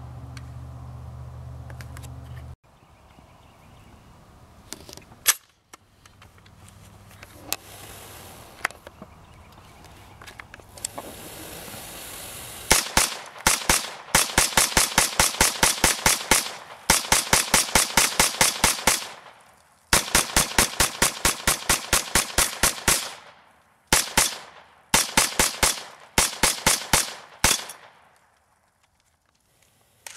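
AR-57 rifle firing 5.7×28 mm rounds from its 50-round top-loaded magazine. The shots come in rapid strings of about five a second, in several groups with short pauses, starting about halfway in.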